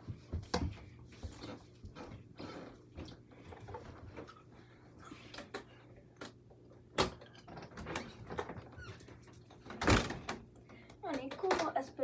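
A mini basketball knocking against an over-the-door hoop's backboard and the door, and bouncing, in scattered thuds. The two loudest knocks come about seven and ten seconds in.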